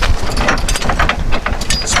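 Metal clicks and clanks of a Roadmaster StowMaster folding tow bar arm being unfolded and swung up by hand on the front of a car, over a steady low rumble.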